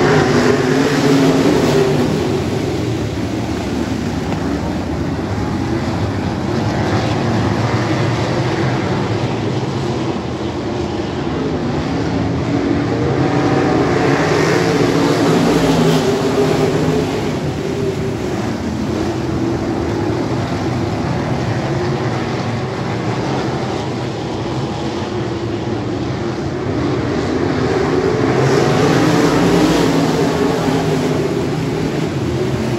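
A field of open-wheel dirt-track race cars racing under green, their engines running hard together. The sound swells as the pack passes, about fifteen seconds in and again near the end.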